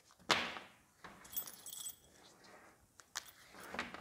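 Clips of a leaf blower's shoulder strap clinking and rattling as they are handled: a sharp click just after the start, light jingling a second or so in, and a few small clicks near the end.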